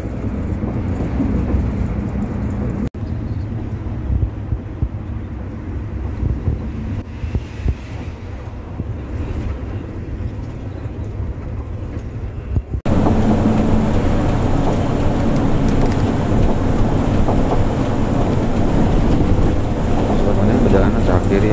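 Cabin noise of a Hino RK-chassis executive coach cruising on a highway: steady engine drone and road noise. The sound changes abruptly twice, about three and thirteen seconds in, and is louder after the second change.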